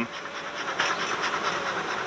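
Honeybees buzzing in an open Layens hive: a steady, even hum from the colony on the exposed frames.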